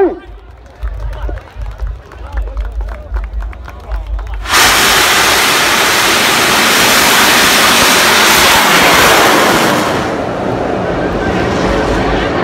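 A bang fai saen, a large black-powder festival rocket, ignites about four and a half seconds in. Its motor cuts in suddenly with a loud, steady rushing roar that holds for about five seconds, then eases somewhat as the rocket climbs away.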